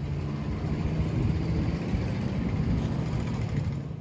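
A steady low mechanical rumble, engine-like, holding level throughout.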